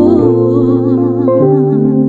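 A female vocalist sings a wordless, humming-like line with wavering vibrato in a slow ballad. Sustained accompaniment chords run underneath, shifting to a new chord partway through.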